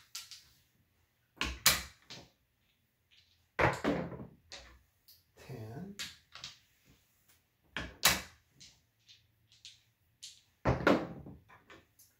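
Dice and clay chips clacking on a home craps table in a handful of separate sharp knocks, the loudest cluster near the end as the dice are thrown and tumble across the layout.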